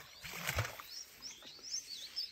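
Small birds chirping in the background: a run of short, high, curling chirps that starts about a second in.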